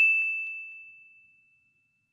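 A single high, bell-like ding, apparently a sound effect added at the cut to a text card, ringing out and fading away within about a second and a half.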